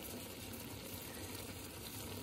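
Food sizzling faintly and steadily in a pan on the stove.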